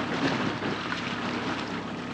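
Dinghy outboard motor running steadily under way, with water noise and wind on the microphone.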